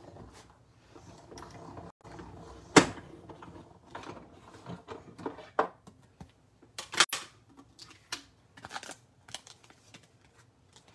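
Manual Big Shot die-cutting machine cranked, a sandwich of plastic cutting plates and a metal die rolling through its rollers with a steady low grinding for about two seconds. This is followed by sharp clicks and clatter as the plates and die are taken out and handled, the loudest a sharp knock about three seconds in.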